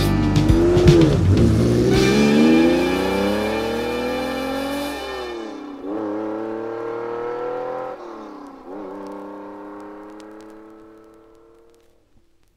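Ferrari 365 GT4 BB flat-twelve engine accelerating hard, its pitch climbing through the gears with upshifts at about five and eight seconds, and fading away to nothing by the end.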